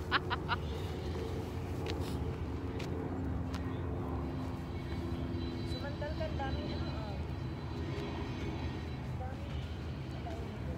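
A steady low rumble of distant engine noise, with faint voices about six seconds in.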